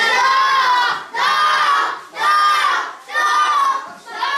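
A group of children shouting together in chorus: four loud shouts about a second apart.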